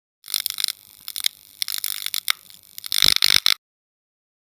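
Logo-intro sound effect: crackling, high-pitched hiss broken by many sharp clicks. It grows denser just before the end and cuts off suddenly.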